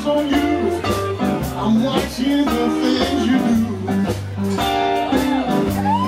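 Live blues band playing: electric guitar and harmonica bending notes over a steady bass line and drums, with a long held, bent note coming in near the end.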